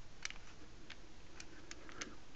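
A few faint, scattered clicks, about five in two seconds and unevenly spaced, over quiet room tone.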